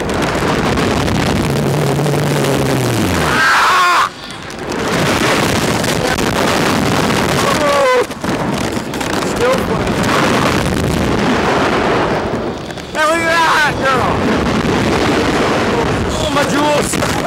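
Heavy wind rushing over the microphone of the camera mounted on a Slingshot reverse-bungee ride's capsule as it is catapulted skyward and bounces. The riders yell a few times, one low yell falling in pitch about two seconds in.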